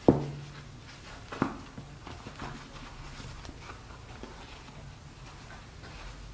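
Hands handling a small fabric coin purse: a sharp click just after the start and another about a second and a half in, then light scattered ticks and rustles as the flap is folded.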